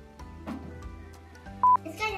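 Background music, broken near the end by a single short, loud electronic beep at one steady high pitch that starts and stops abruptly.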